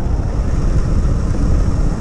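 Motorcycle riding along at steady speed: the engine and rushing wind on the microphone make a steady low rumble.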